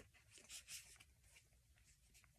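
Near silence: room tone with a few faint soft rustles about half a second in.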